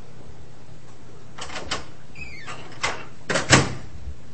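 A few knocks or clunks and a short falling squeak, with the loudest thump near the end.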